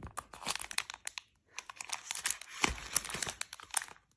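Plastic wrapping of baby wet-wipe packs crinkling as the packs are handled, in two stretches of dense crackling with a short break about a second and a half in.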